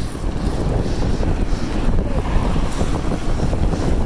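Wind buffeting the microphone on a moving mountain bike, mixed with the rumble of its tyres on a rough asphalt path: a loud, steady low noise.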